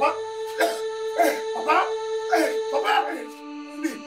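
A man wailing and sobbing in short cries about every half second, each falling in pitch, over background music of sustained held notes.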